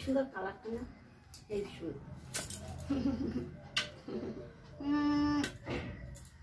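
A woman's voice in short, low murmured fragments, broken by a few sharp clicks. About five seconds in there is one held, evenly pitched vocal sound lasting about half a second.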